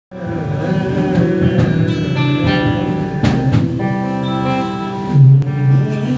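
Acoustic guitar playing the opening of a song, with long held melodic notes sounding over it and a louder low held note about five seconds in.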